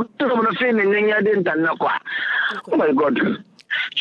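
Speech only: a person talking, with brief pauses.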